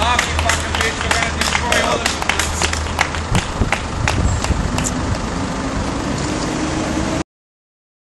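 Busy city street noise with faint voices in the crowd, a low steady hum for the first three seconds or so, and many scattered clicks and knocks. The sound cuts off suddenly about seven seconds in.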